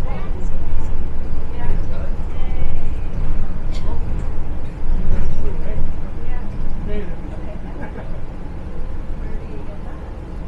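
Steady low rumble of a moving city bus heard from inside the cabin, with indistinct passenger chatter over it.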